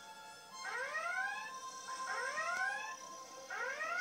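A starship alert klaxon from a TV soundtrack, giving three rising whoops about a second and a half apart over a held music drone. It is heard through a TV's speaker.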